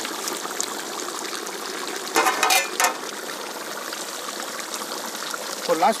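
Turkey curry bubbling and sizzling steadily in an iron kadai over a wood fire, with a short burst of crackling about two seconds in.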